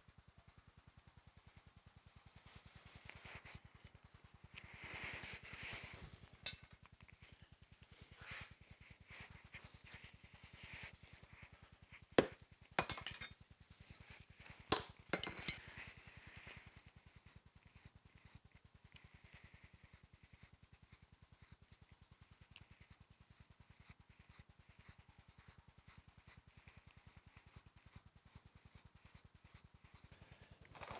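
Faint scraping and rustling of oil-bonded moulding sand being worked by hand in a steel casting flask, with a few sharp metallic clicks around the middle.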